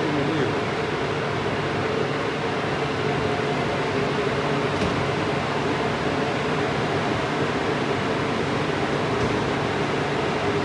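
Steady fan-like machine noise, an even hiss with a faint low hum that does not change.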